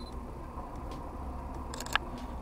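Sony A6100 mirrorless camera's shutter firing once, a short sharp click near the end, over faint steady street background.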